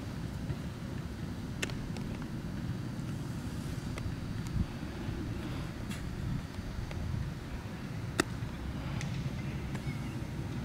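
Steady low wind rumble on the microphone, with several sharp single knocks a second or two apart from baseball fielding practice, the loudest near the end.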